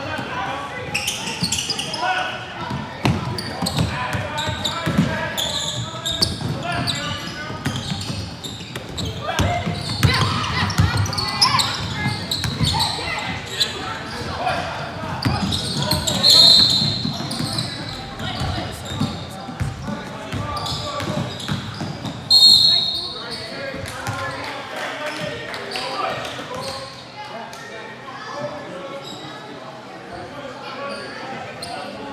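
Basketball dribbling on a hardwood gym floor during a youth game, echoing in a large hall, under indistinct shouting from players and spectators. Two short shrill sounds stand out about two-thirds of the way through.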